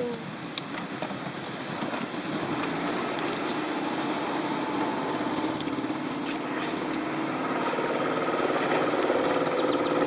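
Small boat's motor running steadily under way, with water rushing past the hull; the motor's hum grows a little louder and clearer toward the end.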